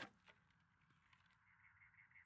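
Near silence: faint outdoor background with one soft click right at the start and a faint high, rapidly pulsing trill from about halfway through.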